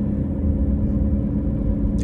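Steady low rumble of a car heard from inside its cabin, with a faint steady hum running under it.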